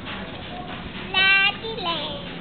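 A young child's short, high-pitched squeal about a second in, held steady for under half a second, then a couple of shorter falling vocal glides.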